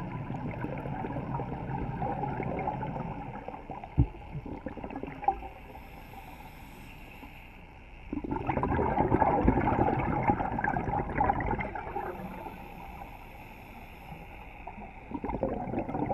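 Scuba regulator breathing underwater: long noisy rushes of exhaled bubbles, one starting every seven seconds or so, with the quieter hiss of each inhale through the demand valve between them. Two sharp knocks sound about four and five seconds in.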